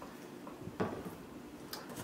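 Quiet handling sounds with a soft knock a little under a second in, as a plastic spray bottle of cleaner is set down.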